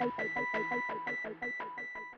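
Electronic ident jingle: fast pulsing synth notes over steady high beeping tones, fading down toward the end.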